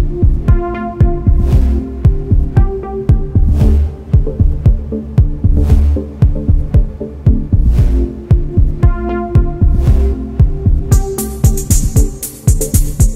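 Electronic dance track in a melodic techno style: a deep pulsing kick drum and bass under airy noise swells about every two seconds, with short chord stabs. Crisp hi-hats come in near the end.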